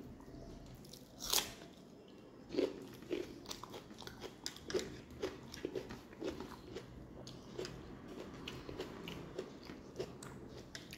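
Close-miked bite into a piece of raw red onion, a single loud crunch about a second in, followed by steady crunchy chewing at about two chews a second.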